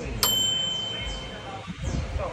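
A single bright ding a moment in, from something small being struck, ringing out for under a second over low chatter.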